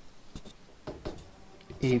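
Marker pen scratching across a whiteboard in a few short strokes as a line is drawn and a letter written.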